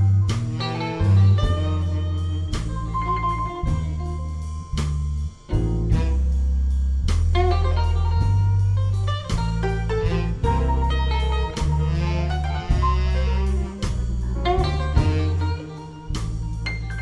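Instrumental blues played by a band: guitar lines over a bass line that changes note every second or so, with drum hits throughout.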